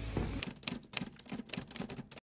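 Background music fades out, followed by a rapid, irregular run of sharp clicks and taps that cuts off abruptly.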